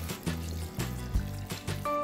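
Water being poured from a plastic measuring jug into a saucepan of diced pumpkin, over background music.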